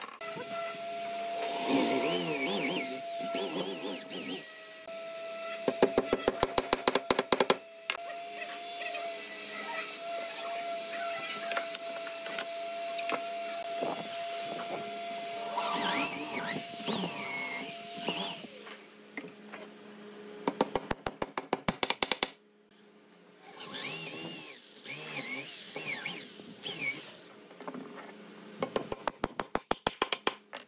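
Claw hammer striking wooden dowel pins into a solid-wood table frame joint, in quick bursts of rapid blows with pauses between them. A steady hum runs through the first two thirds, and high chirps come and go.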